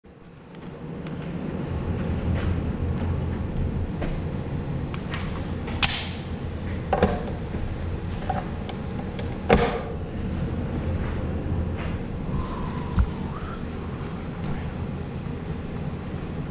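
A steady low hum of room noise, with a few sharp clicks and knocks as a pistol is handled and set down on a table. The loudest knock comes about two-thirds of the way through.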